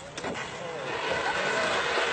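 A rally car approaching, its engine getting steadily louder, with spectators' voices over it.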